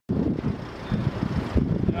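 Wind buffeting the microphone: an irregular, gusty low rumble.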